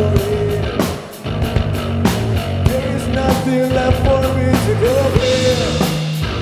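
Rock band playing live: drums and cymbals hit steadily under distorted guitars and held pitched notes, with a short break in the sound about a second in.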